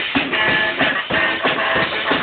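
A band playing live, led by a Sonor drum kit beating out a steady, fast rhythm of about three hits a second under sustained pitched instrument notes.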